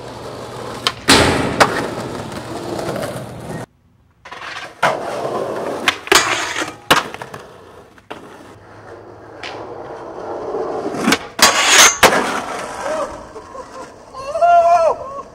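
Skateboard wheels rolling on pavement, broken by a series of sharp wooden clacks from board pops and landings, loudest near the end. A short drop-out about four seconds in falls between clips.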